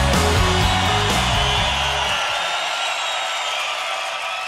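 Rock music with electric guitar, bass and drums. About halfway through, the bass and drums stop and a high ringing wash is left, slowly fading out.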